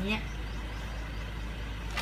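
Steady low background hum with faint even noise and no distinct event.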